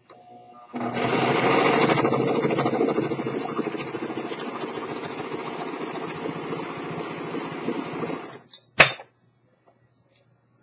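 Singer overlock serger running at speed for about seven and a half seconds, sewing a three-thread overlock seam as a fast, even mechanical whir, loudest in its first couple of seconds. It stops, and a single sharp click follows.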